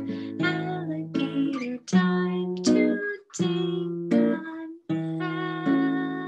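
Acoustic guitar strummed in held chords, about one strum a second, under a woman's singing voice.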